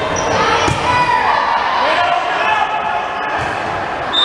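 Girls' voices calling and shouting in an echoing gymnasium, with a volleyball bouncing once on the hardwood court about two-thirds of a second in.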